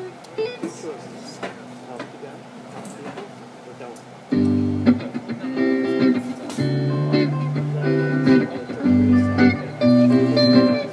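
Hollow-body electric guitar through a small amplifier: a few faint notes and handling sounds, then about four seconds in, loud sustained chords begin, changing every second or so.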